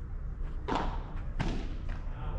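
Two sharp knocks about 0.7 seconds apart, the first ringing on a little longer: a padel ball being struck and bouncing during a rally. A steady low rumble runs underneath.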